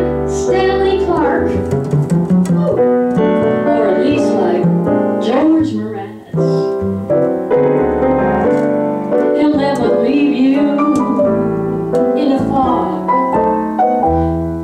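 Piano and upright bass playing a jazz instrumental passage, the bass holding low sustained notes under the piano.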